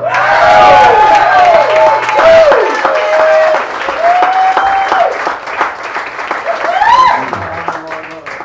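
Audience applauding and cheering with whoops as an acoustic song ends. The applause thins out toward the end.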